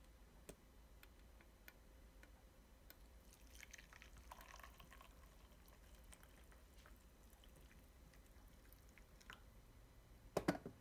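Faint pouring of freshly brewed coffee from a Bodum French press into a glass mug, lasting a couple of seconds from about three and a half seconds in, with a few faint light clicks around it.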